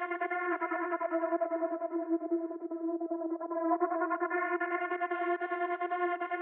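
Dark techno beat with a sustained synthesizer chord and no drums or bass; its upper tones are filtered down about two seconds in and open up again a little over a second later.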